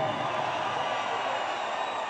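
Concert crowd in an arena making a steady, even noise of cheering and chatter.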